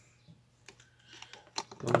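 A few faint, scattered light clicks and taps as a handheld digital multimeter is moved about and set down on a workbench. A man's voice starts near the end.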